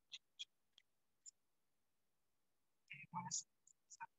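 Video-call audio that drops to dead silence between sounds, broken by a few short clicks in the first second and a half and a brief clipped fragment of muffled voice about three seconds in. The choppy, cut-off sound is typical of a call whose noise suppression is gating the audio; participants soon say the sound is not great and they can't hear the instructor.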